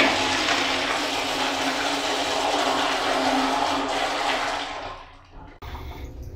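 Toilet flushing: a loud rush of water that fades and dies away about five seconds in.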